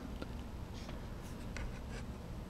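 Quiet room tone with a few faint scratching and ticking sounds.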